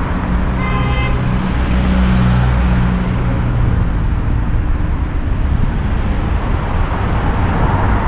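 Road traffic on a busy street: a steady rumble of car engines and tyres, with a nearby engine's drone in the first few seconds and a short, higher-pitched tone about a second in.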